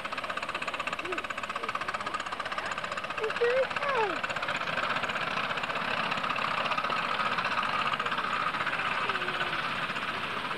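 Two miniature live steam locomotives double-heading a passenger train, their exhausts chuffing in a fast, steady rhythm as they pass.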